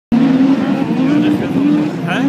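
Autocross race car engines running, held at a steady pitch that rises and falls slightly as the cars go round the dirt track.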